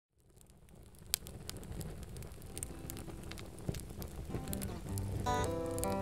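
Wood campfire crackling and popping, fading in from silence. From about five seconds in, guitar notes join.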